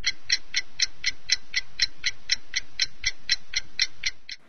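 Ticking clock sound effect, an even run of sharp ticks at about four a second, counting down the time to answer a quiz question.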